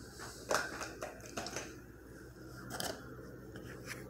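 Handling noise as the phone is moved about: a few short scrapes and clicks, the loudest about half a second in and another near three seconds, over a faint steady hum.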